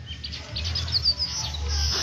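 A small bird chirping: a rapid run of short high chirps, then one held high note near the end, over a steady low rumble.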